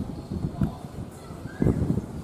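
Passenger train coaches rolling through the station's switches and rail joints: a run of irregular low wheel clacks, several a second.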